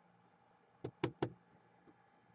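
Keys on a Gateway laptop keyboard being pressed: three quick, sharp clicks about a second in, then one faint click near the end.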